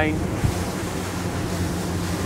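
Twin Mercury V12 600 hp outboards running with a steady low hum beneath a rush of wind and water. There is a soft low thump about half a second in.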